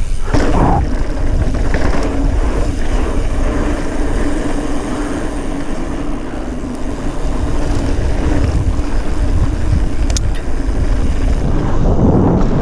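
A 2019 Commencal Meta AM 29 mountain bike rolling fast down a dirt trail: tyre noise and wind noise on the action camera's microphone, with a steady hum and a single sharp clack about ten seconds in.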